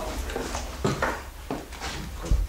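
Footsteps scuffing over debris on the floor, with a few short sharp knocks about a second in and near the end.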